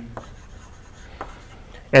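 Chalk scratching on a blackboard as words are written, faint, with a couple of sharper taps of the chalk.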